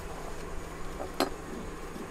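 Plastic campsite hook-up plug being handled and fitted together, with one sharp click of the plastic parts about a second in over a low steady background hum.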